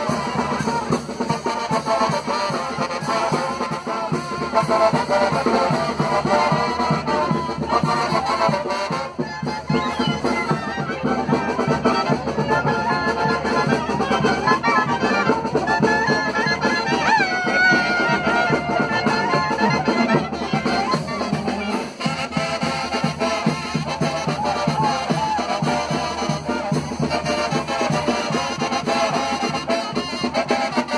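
Live Mexican brass band playing a continuous tune, led by trumpets over a sousaphone and bass drum.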